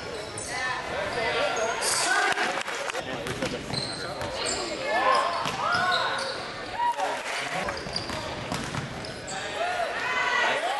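Basketball game on a hardwood gym court: sneakers squeak repeatedly in short chirps, the ball bounces, and players and the crowd call out.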